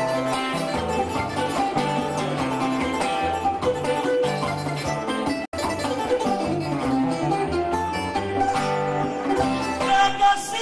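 Instrumental interlude of Cuban punto guajiro between sung décimas: guitars and other plucked strings playing the melody over a repeating bass line. The sound cuts out completely for an instant about halfway through.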